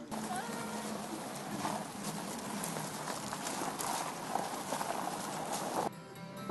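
Footsteps crunching on gravel as several people walk, a busy run of short irregular steps.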